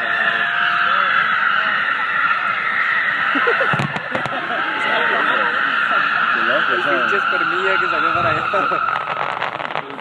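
Fireworks display: a loud, steady hiss from rising fountain-style fireworks, slowly dropping in pitch, with a crowd's voices underneath. A few sharp cracks come about four seconds in, and a rapid crackle near the end.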